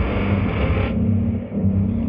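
8Dio Emotional Guitars Pads 'Loathing' patch, a sampled guitar pad played from a keyboard: a low, sustained drone with a slow repeating pulse in it. Its upper range thins out about halfway through.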